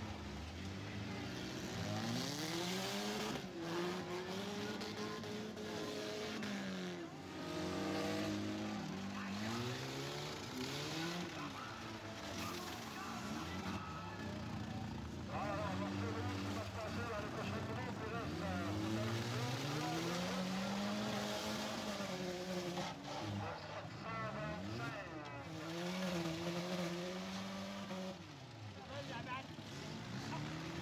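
Several demolition-derby cars' engines revving over one another, their pitch rising and falling again and again.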